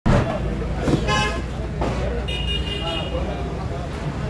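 Street traffic with vehicle horns: a short horn toot about a second in and a second, higher horn around two and a half seconds in, over a steady low traffic rumble and voices.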